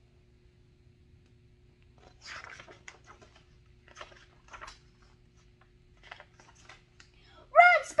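Paper pages of a picture book rustling as they are turned, in several short, soft rustles. A child's voice starts just before the end.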